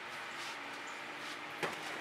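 Quiet background hiss with a faint steady hum, and a single soft knock near the end, typical of a plastic paint pour cup bumping against the painter.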